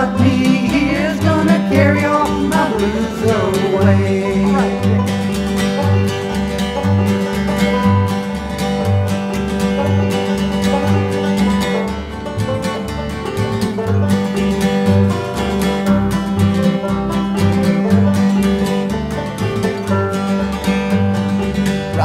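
Bluegrass music: an instrumental break of picked strings over a steady bass that alternates between two notes, with the last wavering melody line fading in the first few seconds.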